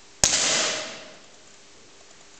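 A single pistol shot: one sharp crack about a quarter second in, followed by a hissing echo that dies away within about a second in the hall.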